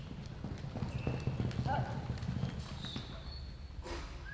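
Hoofbeats of a horse galloping on soft dirt arena footing, a rapid run of dull thuds.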